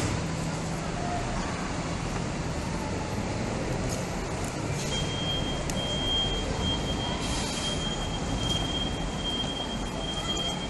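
Steady city-street ambience: a noise bed of traffic and passers-by, with a thin, steady high tone that starts about halfway through.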